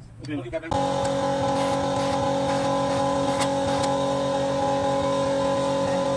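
Steady machine hum with several fixed pitches and a noisy hiss, starting about a second in and cutting off suddenly at the end.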